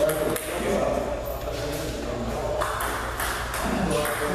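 Table tennis ball clicking off the paddles and the table in a rally, a sharp click about every half second.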